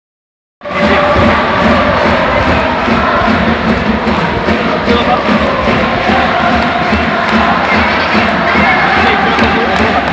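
Large football stadium crowd cheering and chanting, a steady wall of many voices singing together, starting about half a second in.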